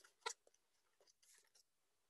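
Near silence, broken by one short, faint crackle about a quarter of a second in as a taped paper craft is handled.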